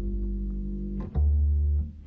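A live band's instrumental intro: a plucked double bass sounding low notes about every half second, with acoustic guitar chords over it.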